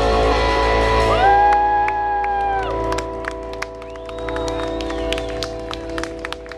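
The last chord of a live rock song left ringing from the guitar amplifiers, the band's playing having stopped, while audience members whoop and scattered clapping starts.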